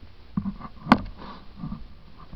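A single sharp click a little under a second in, with short vocal sounds, grunts or breaths, just before and after it.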